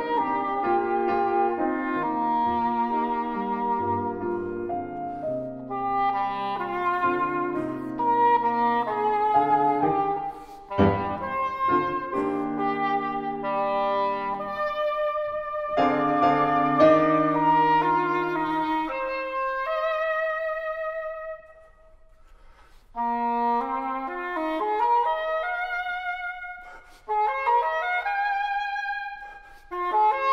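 English horn playing a slow melodic line with vibrato, accompanied by grand piano, in a contemporary classical duo piece. The music breaks off briefly about two-thirds of the way through, then resumes.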